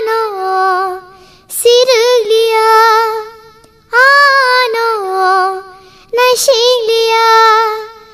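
A child singing unaccompanied in a high voice: four phrases of long held notes, each about two seconds with a short break between, the pitch dropping at the end of each phrase.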